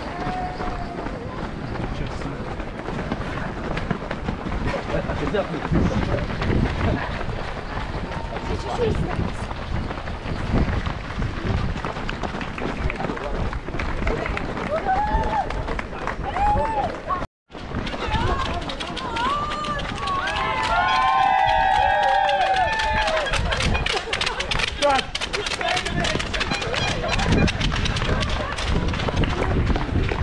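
Runners' feet pounding on tarmac in a running pack under a steady rumble of movement noise, with indistinct voices throughout. Shouted calls and cheering from the roadside are loudest about two-thirds of the way in. The sound drops out completely for a moment just past halfway, at a cut.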